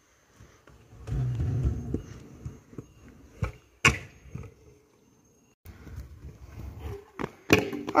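Stunt scooter's small hard wheels rolling over concrete paving slabs with a rough rumble. Twice there are sharp clacks of the deck hitting the ground as a rider tries a whip, a deck-spin trick: two about a second into the roll, and two more near the end.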